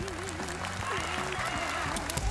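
Spectators applauding in a sports hall, with drawn-out wavering shouts from kendo fencers facing off (kiai) over the clapping.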